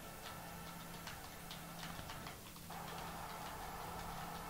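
Faint, irregular light clicks, a few per second, over a steady low electrical hum and room noise.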